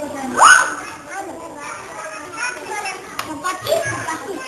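Young children playing and chattering, many small voices overlapping, with one loud rising cry from a child about half a second in.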